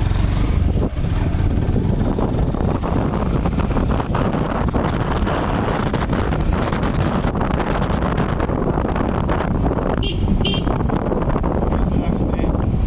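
Steady rumble and road noise of a small open-framed rickshaw van moving along a paved road, with many small rattles.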